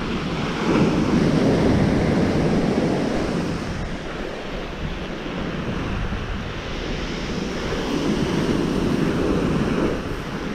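Surf breaking and washing up a shingle beach, swelling twice: once from about a second in and again near the end. Wind buffets the microphone throughout.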